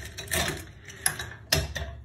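The mechanism of a Securemme lever lock being worked by its key, with a series of sharp metallic clicks and clacks as the bolts slide, the loudest about a second and a half in, and keys jangling on the ring. This is a check that the freshly picked lock still works normally and is undamaged.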